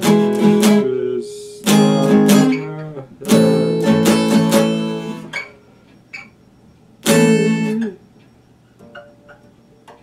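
Epiphone acoustic guitar played in separate bursts of chords: a few chords at the start, another just under two seconds in, a longer run from about three to five seconds, and one chord at about seven seconds, each ringing briefly and then stopped. A few soft plucks follow near the end.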